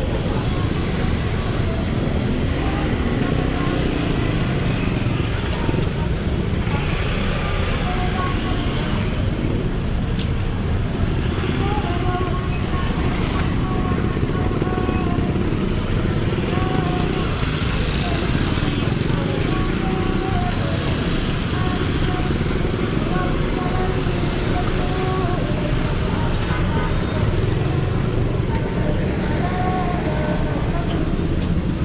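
Busy street traffic: motorcycle and car engines running in slow, crowded traffic, with people's voices around.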